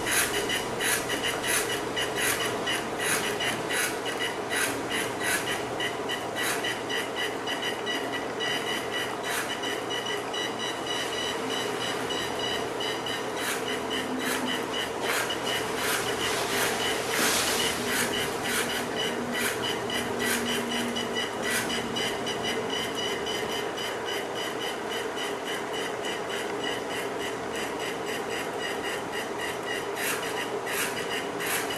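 Small robot's electric drive motors running under line-following control: a steady whine broken by many irregular clicks as the motors are switched on and off a few steps at a time.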